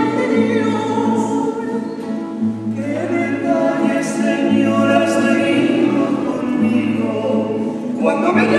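Female and male voices singing a Spanish Mass entrance hymn, accompanied by classical guitar and laúd.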